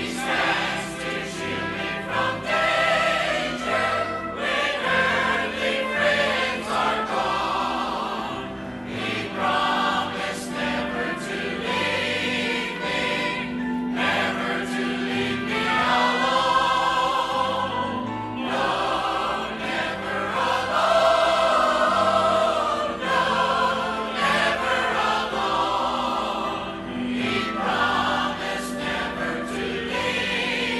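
Church choir singing a hymn.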